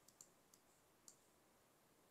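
Near silence: quiet room tone with a few faint, small clicks, the clearest just after the start and about a second in.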